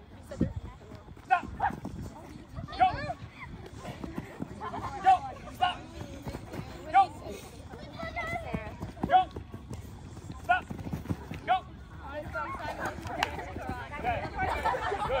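Many feet pattering on artificial turf as a group of players sprints, with short shouted one-word calls every second or so over it; several voices overlap into chatter near the end.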